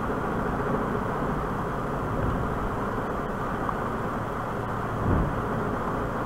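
Steady low background noise picked up by the microphone between spoken passages, with a slight swell about five seconds in.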